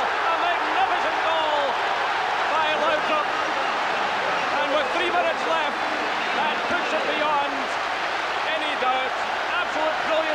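Football stadium crowd cheering a home goal: a loud, steady roar of many voices shouting over clapping.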